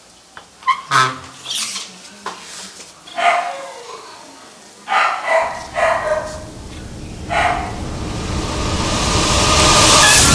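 A dog barking about six times in short single barks. Through the second half, a low rushing noise swells steadily louder until the end.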